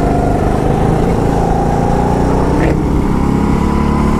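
Go-kart engine running steadily at high revs, close to the driver. The pitch shifts slightly about two-thirds of the way through.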